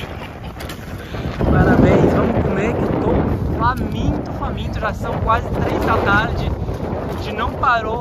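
Strong wind buffeting the microphone in gusts, loudest about two seconds in, with short bursts of voice from about halfway through.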